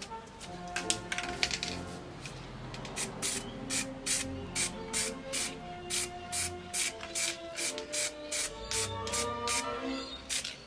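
Spray paint can hissing in short, repeated bursts, about two a second, starting a few seconds in, over background music.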